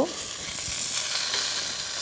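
Mustard oil sizzling steadily in a hot kadhai.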